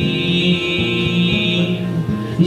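Acoustic guitar played live, its notes ringing steadily, with a held high tone over it that stops shortly before the end.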